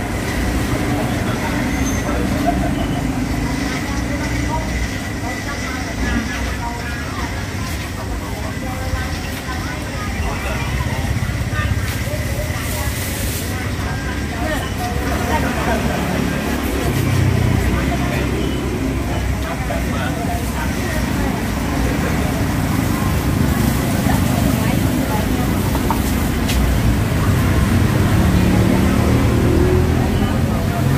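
Steady rumble of street traffic, with people talking over it.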